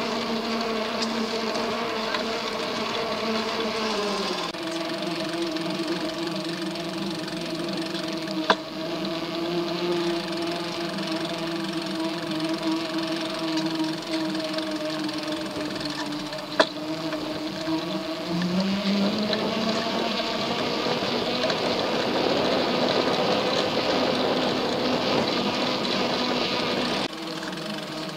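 A steady, loud mechanical hum or buzz with a clear pitch, like a small motor running. It drops to a lower pitch about four seconds in and rises again near the two-thirds mark, with two sharp clicks in between.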